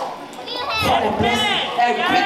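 Voices in a crowded hall: high-pitched children's calls and chatter, rising after a brief lull at the start.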